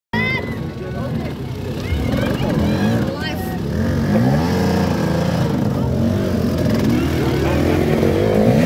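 Dirt bike engine revving up and down again and again as the bike is worked through thick mud, with people's voices over it.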